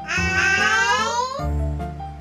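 Children's backing music with a high, drawn-out, voice-like call over it for about the first second and a half, rising and then falling in pitch.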